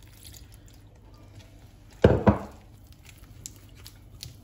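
Water poured from a small bowl into gram-flour batter, with one short loud splash about two seconds in, amid faint wet sounds of the batter being worked.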